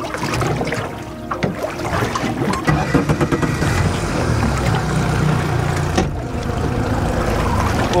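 Steady wind and water noise aboard a small aluminium boat at sea, with a low rumble building from about the middle and a few sharp knocks.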